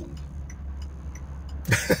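A man bursts out laughing near the end, over the low steady hum of a car cabin with faint regular ticking.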